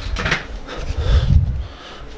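A man breathing hard close to a handheld phone's microphone, with rumbling handling noise that peaks around a second in.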